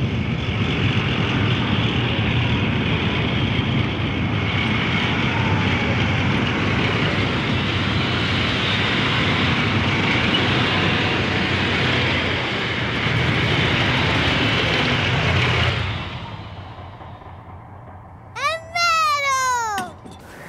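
M4 Sherman tank driving up, its engine and tracks making a loud, steady noise that fades away after about sixteen seconds. Near the end a child cries out in a high, excited voice.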